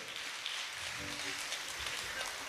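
Faint applause from the guests, an even patter of clapping.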